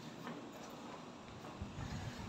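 Faint footsteps walking across a hard floor, a few soft knocks that grow slightly louder near the end.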